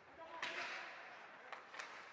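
Ice hockey play on the rink, made by sticks, puck and skates on the ice. About half a second in there is a sharp crack with a brief scraping hiss, and near the end two short clicks.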